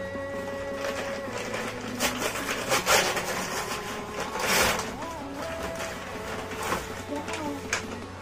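Paper courier envelope being torn and crinkled open by hand, with short ripping noises about two, three and four and a half seconds in.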